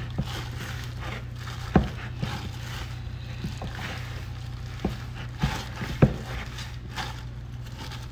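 A gloved hand kneading and squeezing rough bread dough in a plastic bowl: squishing and plastic rustling, with scattered sharp knocks of the bowl and hand, the loudest about six seconds in.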